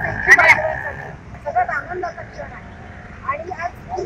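People's voices talking in the background, with a brief, very loud crackling burst and a steady whistling tone in the first second.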